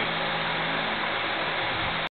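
Steady ventilation noise in an enclosed room: an even hiss with a low, constant hum.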